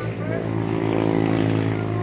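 A steady, low engine drone with faint voices over it.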